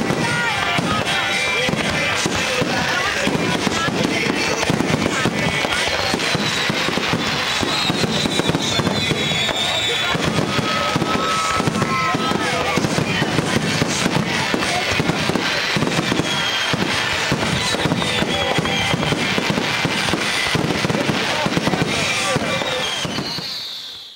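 Fireworks aerial shells bursting in a rapid, unbroken barrage of booms and crackles, with the sound fading out at the very end.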